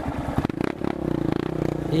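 Yamaha Lander 250 single-cylinder trail bike engine idling with even, rapid firing pulses, then picking up revs about half a second in. A few clattering knocks sound as the revs come up.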